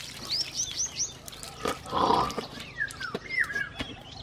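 Water from a hand pump splashing as a man washes his face, with a noisy burst about two seconds in that is the loudest sound. Birds call throughout: a quick run of rising-and-falling chirps in the first second and a few falling whistles later.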